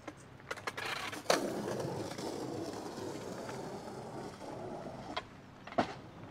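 Skateboard wheels rolling across stone paving: a steady rough rolling noise that starts abruptly about a second in and runs for around four seconds, with a few sharp clacks of the board before and after.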